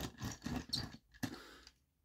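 Small clicks and scrapes of a plastic transforming dinosaur toy being handled and turned in the hand, stopping a little before the end.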